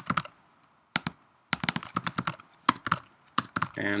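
Typing on a computer keyboard: irregular single keystrokes, a pause of about a second, then a quicker run of keys.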